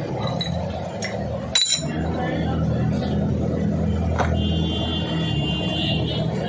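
Loose metal scooter transmission parts and tools clinking as they are handled, with one sharp clink about one and a half seconds in and a brief metallic ring near the end. A steady low hum runs underneath.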